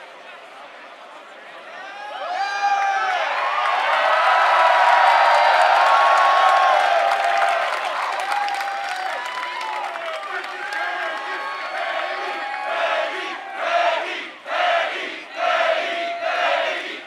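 Large festival crowd cheering and screaming, swelling up about two seconds in and loudest around the middle, then breaking into rhythmic surges of shouting near the end.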